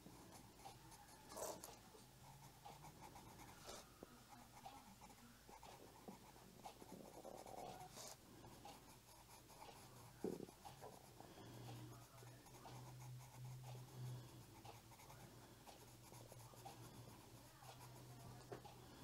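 Cezan colored pencil scratching faintly on coloring-book paper in short, irregular shading strokes.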